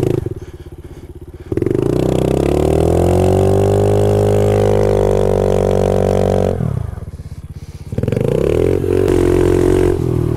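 Honda CRF70 pit bike's small air-cooled four-stroke single engine. It runs low at first, revs up sharply about a second and a half in and holds high revs for about five seconds. It then drops back near idle and revs up again near the end as the bike pulls away.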